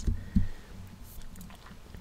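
Soft mouth clicks close to the microphone, two short ones within the first half-second, then a faint hush.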